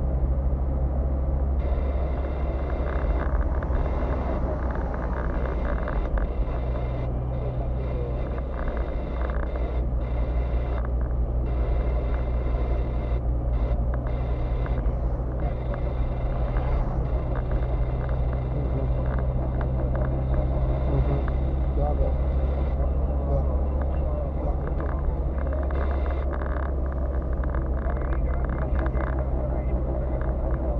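Steady low drone of a car's engine and tyres on the road, heard from inside the cabin while driving.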